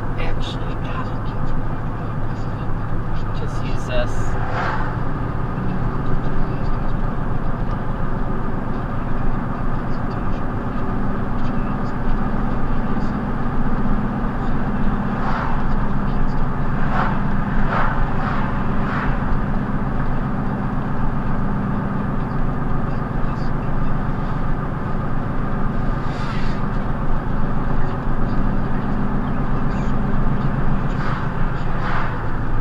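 Car driving heard from inside the cabin: steady engine and road rumble as the car picks up speed to around 40 mph.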